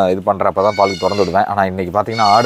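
Goats bleating: several drawn-out calls with a wavering pitch, one after another.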